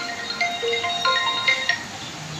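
Background music: a melody of single bell-like mallet-percussion notes, one after another at changing pitches, stopping near the end.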